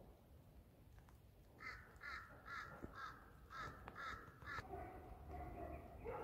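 A crow cawing in a quick run of about eight short calls over some three seconds, starting about one and a half seconds in, followed near the end by a lower, drawn-out sound.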